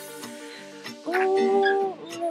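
Backing track playing an instrumental bed. About a second in, a woman's voice sings one long held note.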